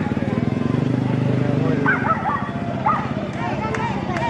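Single-cylinder rally motorcycle engine idling with regular low pulses. It rises to a steadier, stronger run for about a second, starting under a second in.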